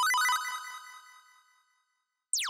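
Short bright chime jingle, a quick run of bell-like notes that rings out and fades away over about a second and a half: an edited-in sound effect accompanying a caption card.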